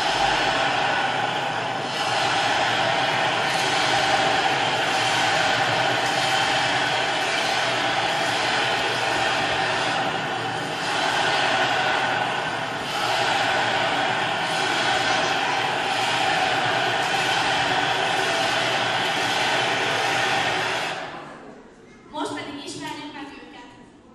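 A loud, steady din of a big crowd with sustained droning tones in it, played back over a sound system as stadium atmosphere. It fades out about a second before the end.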